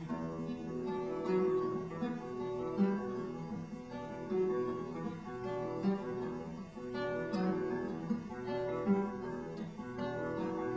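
Acoustic guitar played solo: the strummed instrumental opening of a folk song before the vocals come in, in a steady, repeating rhythm.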